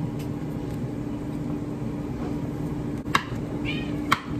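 Chef's knife cutting kiwi on a wooden cutting board, with two sharp knocks of the blade on the board about three and four seconds in, over a steady low kitchen hum. A short, high-pitched animal call sounds just before the end.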